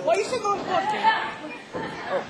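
Several people's voices shouting and chattering, with no clear words, in a large hall.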